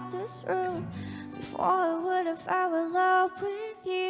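A young woman's solo voice singing a slow, soft ballad over light accompaniment, with several long held notes.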